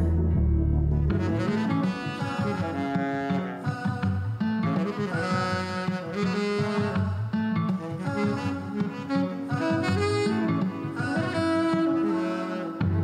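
Live small band playing an instrumental passage: a saxophone over bowed strings, acoustic guitar and a moving bass line. A long low note ends about a second in.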